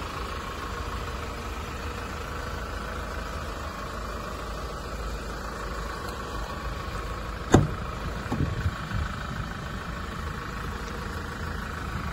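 Hyundai Grand Starex van's engine idling steadily. About halfway through comes one sharp click followed by a few softer knocks, as a door is opened.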